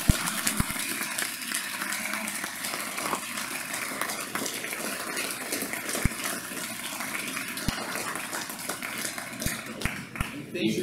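An audience applauding: a dense, steady patter of many hands clapping.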